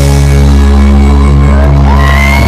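A live reggae band holds one sustained chord over a deep bass note, with no drumming: the ring-out at the end of the song. It is loud, recorded close to the PA.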